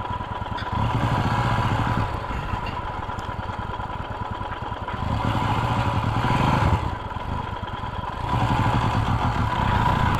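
Motorcycle engine running at low speed as the bike creeps along, with the throttle opened three times in short stretches between steadier, quieter running.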